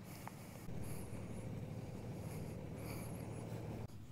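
Soft scraping of a shovel in gravelly soil, faint, over a low steady rumble that cuts off abruptly near the end.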